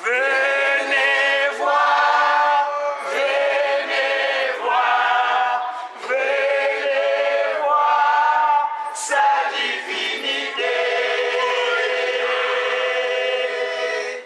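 A choir singing unaccompanied in harmony. The phrases are short with brief breaks between them, and the last is held for about three seconds near the end.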